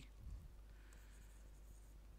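Near silence with faint pen strokes from a stylus writing on an interactive display board.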